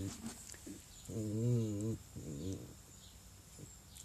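A dog whinging: one drawn-out, wavering whine about a second in, then a shorter, fainter one just after.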